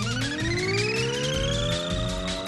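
Background music with a steady beat, over which a long pitched sound effect glides upward and then levels off into a held tone about a second in.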